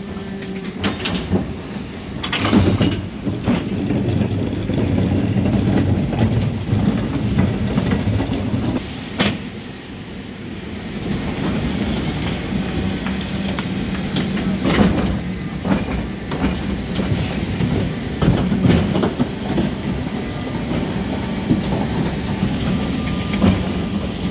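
Mercedes Econic refuse truck's diesel engine running with the Geesink rear-loader's hydraulics working, as the bin lift tips an 1100-litre wheeled bin into the hopper. A few sharp clanks of the metal bin and lift come over the steady machinery hum.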